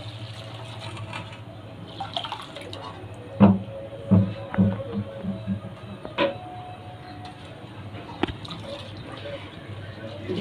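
Water poured from a plastic mug into a steel bowl of fried rice grains, and the wet grains stirred by hand. There are a few sharp knocks in the middle.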